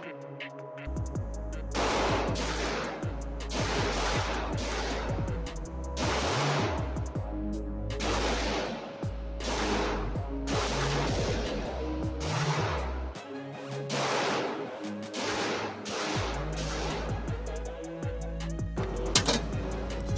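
Springfield Armory Prodigy 9mm pistol firing a slow, even string of about twenty shots, roughly one every 0.8 seconds. Each shot echoes off the walls of an indoor range, and electronic music plays underneath throughout.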